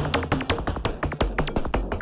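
Live-coded electronic music from TidalCycles, played on synthesized supernoise and 808-style voices: a dense, fast pattern of short pitched blips and percussive hits over a steady low bass.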